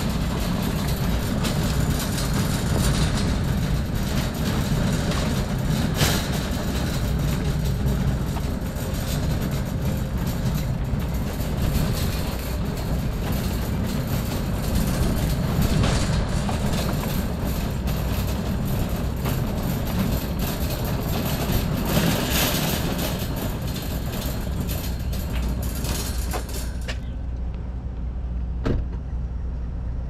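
Wire shopping cart rolling across an asphalt parking lot, its wheels and basket rattling steadily. The rattle stops near the end.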